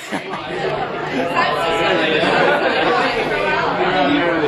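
Loud chatter of many voices talking over one another in a crowded bar.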